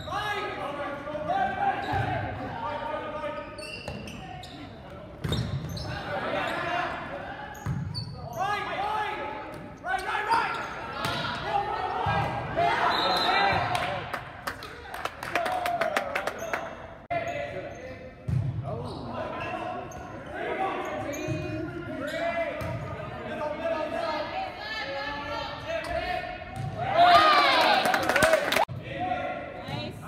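Voices of players and onlookers calling out through a volleyball rally, with sharp smacks of the ball and its bounces on the hardwood floor echoing in a large gym. A loud, high shout near the end.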